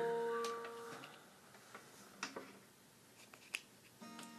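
Acoustic guitar's last strummed chord ringing out and dying away over about a second, followed by a few faint, scattered clicks and taps.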